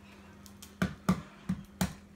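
An egg being cracked open by hand: about six sharp clicks and snaps of breaking shell, spaced unevenly, over a faint steady hum.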